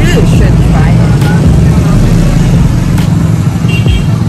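Loud, steady low rumble of road traffic, a motor vehicle running close by.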